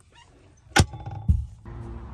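Two knocks about half a second apart, a sharp one and then a duller thump, from the hinged wooden lid of an under-seat storage compartment being shut. A steady low background hiss follows.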